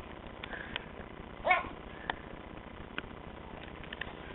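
A toddler's short rising squeal, about a second and a half in, with a few light clicks and knocks from the camera being handled.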